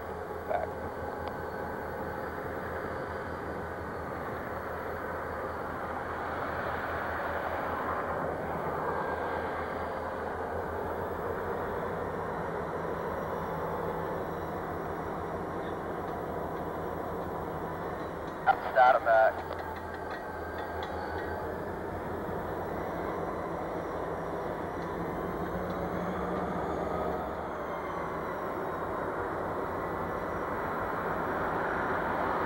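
Steady rumble of a freight train's diesel locomotives and cars, heard from across a field. Short loud pitched bursts come just at the start and again as a quick cluster of three or four about 18 seconds in.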